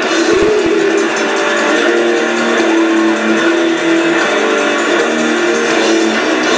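Death metal band playing live, with heavily distorted electric guitars holding long, sustained notes in a dense, loud wall of sound.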